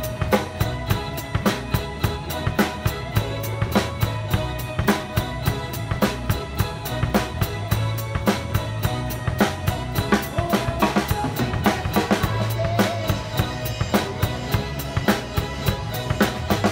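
Drum kit played live with a band: a steady beat of bass drum, snare and cymbal strokes over sustained low bass notes.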